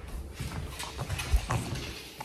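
Handling noise of a phone camera being picked up and moved: a series of soft knocks and rubbing, the loudest a low thump about a second and a half in.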